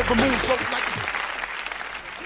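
Studio audience applauding and cheering, dying away over the two seconds.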